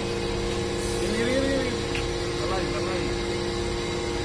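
Iron powder briquette machine running with a steady hum of several constant tones over a low rumble.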